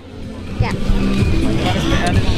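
Low, fluctuating rumble on a handheld microphone, building about half a second in and staying loud.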